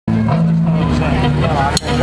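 Amplified live band holding low bass and keyboard notes, with a voice over the music.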